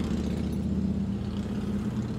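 A motor running at a steady speed: an even, low mechanical hum.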